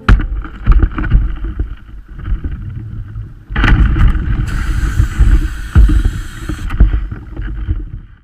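Water sloshing and splashing against a camera held half-submerged at the waterline, with heavy, uneven low thumps of water on the housing. It gets louder and hissier from about halfway through.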